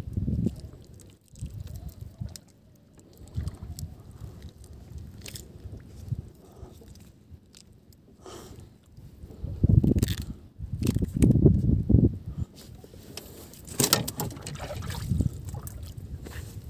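Water lapping and sloshing against the hull of a small outrigger boat drifting at sea, in irregular low surges that are loudest a little after the middle, with a few light knocks.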